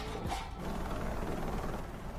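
Helicopter running overhead, a steady mechanical rotor-and-engine noise.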